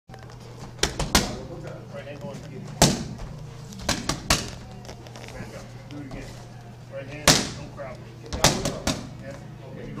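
Gloved boxing punches smacking into padded mitts, about eleven sharp hits. They come in quick combinations of three near the start, around four seconds in and near the end, with single hits between.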